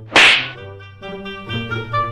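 A single loud, sharp crack, a comic slap sound effect, about a quarter of a second in. It plays over an instrumental tune of held notes that step from one pitch to the next.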